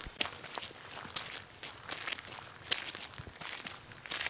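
Footsteps walking at a steady pace on a gritty tarmac path, about two crisp steps a second, with one sharper step about two-thirds of the way through.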